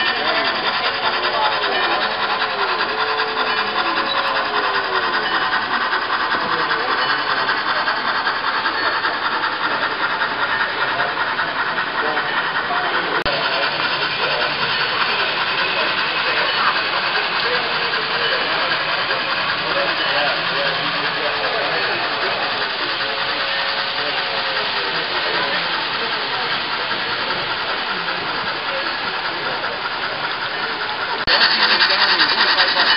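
HO-scale model trains running on the layout: a steady rasping rattle of wheels on track and small motors that holds at an even level.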